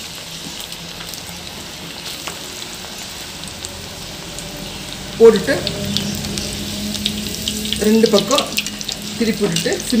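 Noodle bondas deep-frying in hot oil in an aluminium kadai, a steady sizzle of bubbling oil. About halfway in a slotted ladle goes in to stir and turn them, and from then on a person's voice is heard over the frying.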